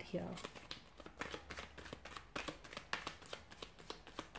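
A tarot deck being shuffled by hand: an irregular run of light, quick card clicks and flicks as the cards slide and drop against each other.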